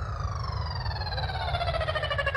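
Electronic dance music on a festival sound system in a breakdown: the kick drum has dropped out, and a siren-like synthesizer tone glides steadily downward in pitch over a low bass rumble, starting to pulse near the end.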